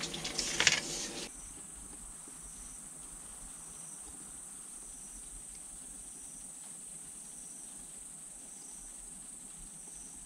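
Faint, steady high-pitched chirring of insects such as crickets. In the first second there are a few sharp clicks and rustles from handling tools and wires.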